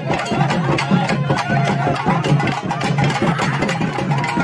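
Traditional percussion music: fast, dense drumming with a few held tones over it, mixed with the voices of a crowd.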